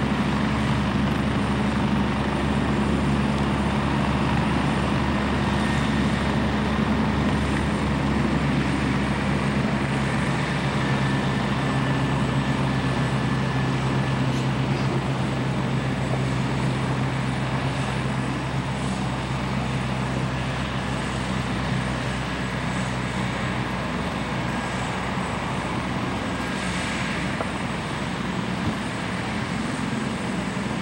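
Medical helicopter running on the ground with its rotor turning, a steady engine and rotor hum that eases slightly in the last few seconds.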